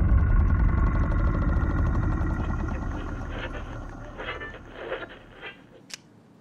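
Trailer sound design: a deep rumbling hit dying away under a sustained, droning chord. It fades steadily, with a few faint rattles, and ends in a short click.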